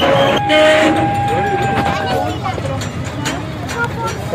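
A park toy train's horn sounding one long, steady note for about two seconds as the train moves along, with the carriage rumbling underneath and passengers chattering.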